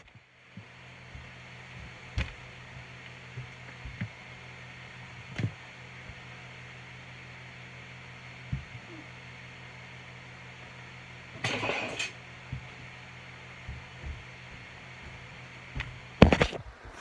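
A faint steady hum with a few scattered knocks, and a brief scuffing rustle about eleven and a half seconds in: handling noise from a phone that is being carried with its camera covered.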